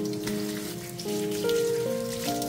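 Cold tap water running and splashing onto green onions in a stainless steel sink as they are rinsed by hand, a steady patter of spatters. Background music with held notes plays over it.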